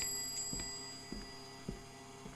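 A small bell rings once and fades out over about a second and a half, with three soft, evenly spaced thumps, about half a second apart, beneath it over a steady low hum.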